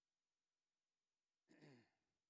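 Near silence, then near the end a man's short sigh into a handheld microphone.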